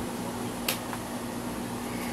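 Window air conditioner running with a steady hum, and one sharp click about a third of the way through.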